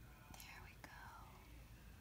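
Near silence with a brief, faint whisper in the first second, falling in pitch, and a small click.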